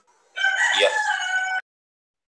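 A rooster crowing once, a loud steady call about a second long that cuts off abruptly, heard over a video-call connection, with a short 'iya' spoken over it.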